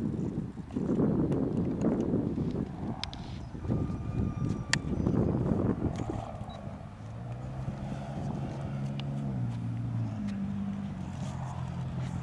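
Wind buffeting the microphone in gusts, with a few sharp clicks as the RC helicopter is handled. In the second half a low hum takes over, stepping between pitches.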